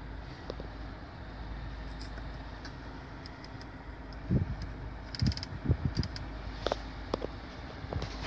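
Steady low hum inside a Mazda CX-5's cabin, with a few soft knocks and faint clicks about halfway through as the dual-zone climate control's temperature dials are turned.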